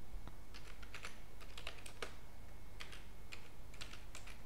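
Typing on a computer keyboard: an irregular run of keystroke clicks in small clusters, starting about half a second in, with a short pause in the middle.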